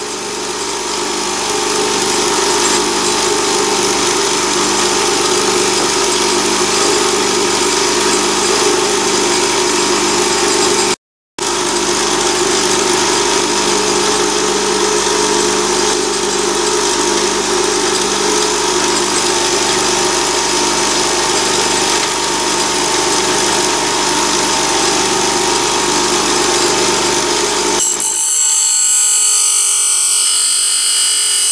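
Bench grinder motor running steadily, cutting out briefly about eleven seconds in. About two seconds before the end the sound turns higher and thinner as a high-speed-steel blank is held against the grinding wheel.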